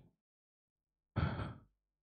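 Silence, broken about a second in by one brief, quiet sound of a person's voice lasting about half a second.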